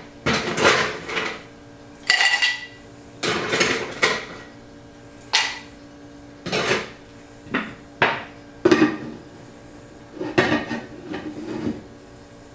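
Ice cubes scooped from a metal ice bucket and dropped into a rocks glass: a string of separate clinks and clatters, some followed by a short glassy ring.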